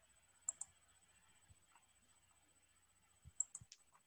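Near silence broken by a few clicks of computer keyboard keys: two about half a second in and a short run of four or five near the end.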